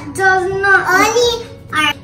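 A young girl singing a short sing-song phrase without clear words, the pitch held and then gliding up and down, with a brief last note near the end.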